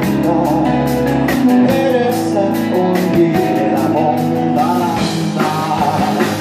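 Rock band playing live: strummed acoustic guitar, electric guitar and bass over a drum kit keeping a steady beat.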